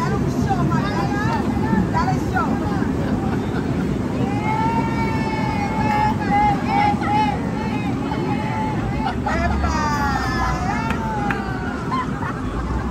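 Busy street crowd: many people talking, some voices close by, over a steady low rumble of city traffic.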